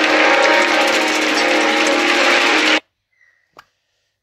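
Audience applause over music, loud and dense, cutting off abruptly a little under three seconds in. Then near silence with a single faint click.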